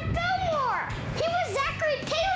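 A young girl's high-pitched voice exclaiming "That's Millard Fillmore!"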